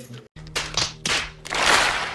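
A large audience applauding, starting about half a second in and swelling near the end.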